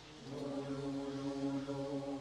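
Mixed choir singing a cappella: after a brief breath at the start, the voices come in together on a new chord and hold it steady.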